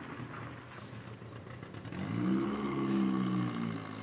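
A passing motor vehicle's engine over outdoor background noise. It comes in about halfway through, rising in pitch, then holds and eases off.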